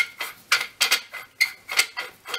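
Threaded steel counterweight end cap being unscrewed from the back of a Goto Kogaku satellite telescope: a run of short, sharp scraping ticks from the metal threads, about three or four a second, as the cap is turned by hand.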